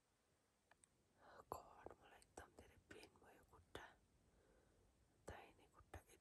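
Very faint whispering with small mouth clicks, barely above silence, starting about a second in.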